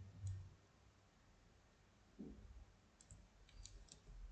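Near silence with a few faint computer mouse clicks, one just after the start and a small cluster near the end.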